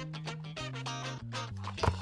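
Background music with a bass line that steps down in pitch note by note. A short sharp knock sounds near the end.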